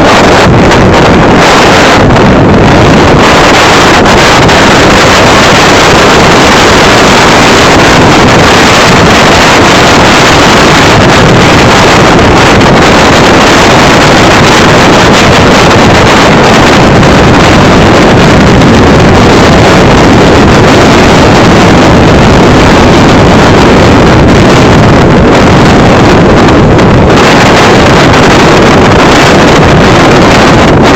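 Wind buffeting the microphone on a moving motorcycle, a loud steady rush with the motorbike's engine and road noise under it.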